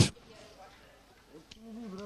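Near silence for about a second and a half, then a small click and a faint voice, off the microphone, humming or starting to speak.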